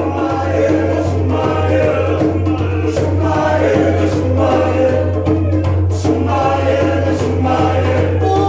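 A male vocal group singing together in harmony, unaccompanied except for a hand drum struck now and then.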